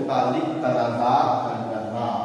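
A man's voice, speaking in a long drawn-out stretch that fades near the end.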